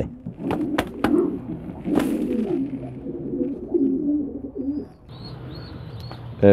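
Domestic pigeons cooing: a series of low, wavering coos, with a few sharp clicks in the first two seconds.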